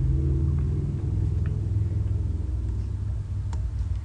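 Steady low rumbling hum, with a couple of faint clicks.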